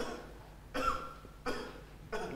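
Two short coughs about a second in, half a second apart.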